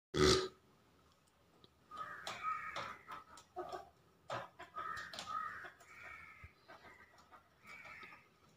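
Irregular clicking and scraping of plastic as hands and a screwdriver work at a wall-mounted circuit-breaker distribution board, with a sharp knock at the very start.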